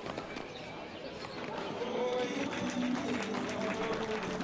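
Quiet outdoor arena ambience with a faint, distant voice in the background, which grows slightly louder about halfway through.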